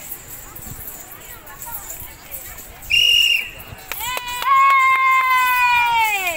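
A short steady whistle blast about three seconds in, then a long high call that holds its pitch for about two seconds before sliding down, over crowd chatter and a few sharp clicks.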